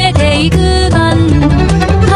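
Loud background music: a melodic lead line over a steady bass.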